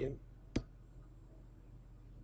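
A single sharp computer mouse click about half a second in, then quiet room tone.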